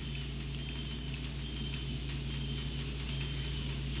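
Steady low electrical hum with a faint even hiss and a faint high thin tone: background noise of the recording, with no other sound.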